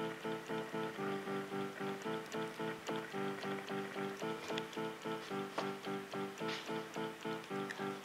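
Portable electronic keyboard playing an even, steady pattern of repeated notes, about three a second.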